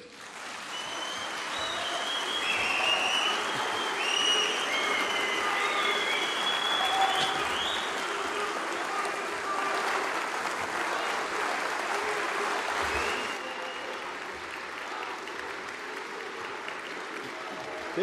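A large hall audience applauding, building over the first second or two with scattered cheers over the clapping, and easing a little after about thirteen seconds.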